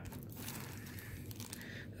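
Faint rustle of a stack of cardboard trading cards being handled and shifted in the hand.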